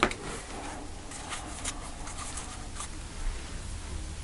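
Tarot cards handled by hand: soft sliding and rubbing of card stock with light taps, and one sharp tap right at the start.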